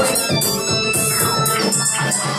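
Dance music with a steady beat playing loudly through the hall's loudspeakers.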